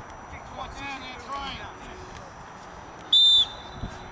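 One short, shrill referee's whistle blast a little after three seconds in, the loudest sound here, over faint distant shouting from the players.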